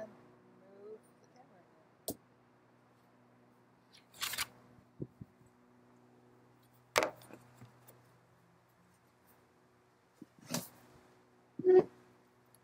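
A handful of short, sharp knocks and thumps, a few seconds apart, as a cone of wedged clay is set down and pressed onto a potter's wheel head, over a faint steady low hum.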